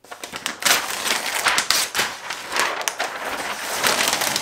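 A large sheet of flip-chart paper being lifted and turned over, rustling and crackling with many quick scratchy strokes.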